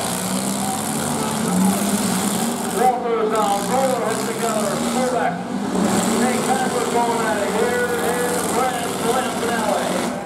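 Several demolition derby cars' engines running and revving up and down together as the cars shove against one another.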